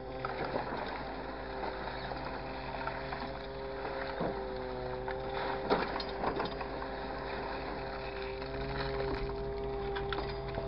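Grapple truck's hydraulic crane and engine running with a steady drone of several tones, its pitch dipping slightly as the grapple closes on a pile of loose chips and lifts it. A few sharp clunks from the grapple and boom come about four and about six seconds in.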